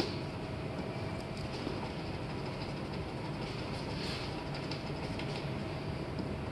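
Light, intermittent scraping of a plastic razor scraper working softened paint off a truck door, over a steady background rumble with a faint hum.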